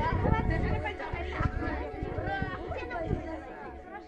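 People chatting, their voices fading toward the end.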